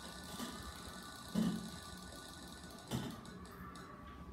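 Spin-the-wheel sound effect from a laptop's speaker, a steady electronic sound with a high hiss, playing while the on-screen wheel spins and cutting off with a click about three seconds in. A short low bump comes about halfway through.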